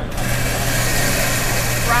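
Bunn commercial coffee grinder switching on just after the start and running steadily, a motor hum under a dense hiss as it grinds coffee beans.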